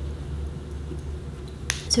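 A steady low hum, then a single sharp click near the end, just before speech resumes.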